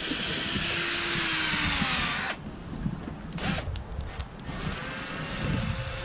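Electric drill spinning a bottle brush inside a glass beer bottle to scrub it clean; the drill stops abruptly a little over two seconds in, leaving quieter knocks and rubbing.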